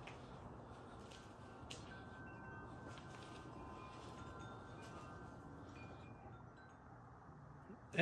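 Quiet room tone with faint ringing tones that come and go.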